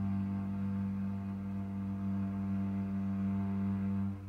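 Cello holding one long bowed low note, a steady tone with no change in pitch.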